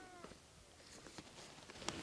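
Near-quiet open-air hush with one faint, short animal call right at the start, falling slightly in pitch.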